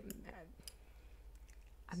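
A few faint, scattered clicks, with a voice starting to speak right at the end.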